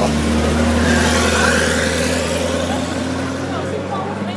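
Ferrari F40's twin-turbocharged V8 running steadily at low speed as the car passes close by, loudest about a second in and then slowly fading.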